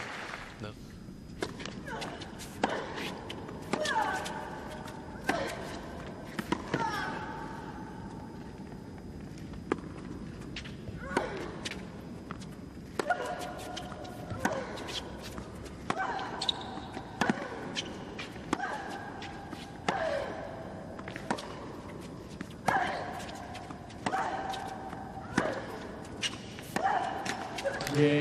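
Long tennis rally: the ball is struck back and forth with racquets, one sharp hit about every second. Many shots come with a player's short grunt that falls in pitch.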